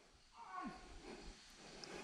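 Near silence, with one faint, brief call-like sound about half a second in.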